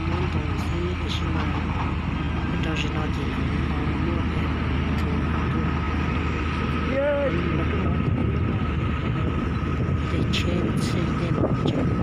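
Engine running steadily with a constant low hum, its pitch wavering slightly.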